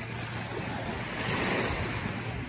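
Small sea waves washing onto a sandy shore, a steady hiss that swells to its loudest about one and a half seconds in, with wind rumbling on the microphone underneath.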